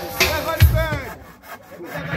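A hand saw cutting through a wooden board, in short strokes, with music playing faintly underneath.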